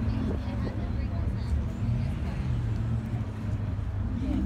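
Outdoor car-show ambience: indistinct voices of people milling around over a steady low rumble.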